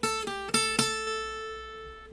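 Steel-string acoustic guitar picking four quick notes in the first second over a high A that rings on as a drone, the notes fading out through the rest.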